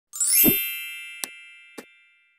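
Logo sting sound effect: a quick rising sweep into a bright, ringing chime with a low thud under it, fading away over the next second and a half. Two short clicks sound later, while the chime is still dying away.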